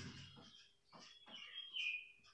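Marker writing on a whiteboard: faint, short scratchy strokes, with a thin high squeak in the second half that drops slightly in pitch.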